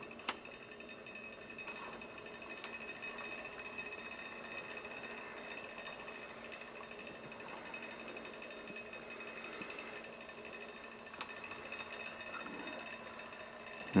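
Stir plate's PC cooling fan running faint and steady inside its box, a thin high whine over a low hum as it spins the magnet under the flask. A couple of faint clicks come through.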